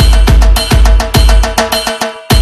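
Electronic dance music with a heavy kick drum about twice a second, quick percussion hits between the beats and held synth tones. The bass drops out right at the end.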